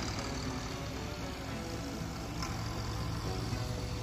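Background music over the low, steady running of a turbocharged International Harvester tractor engine at a tractor pull.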